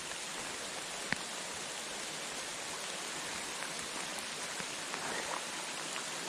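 Steady rain falling on a small river's surface, an even hiss, with a single faint click about a second in.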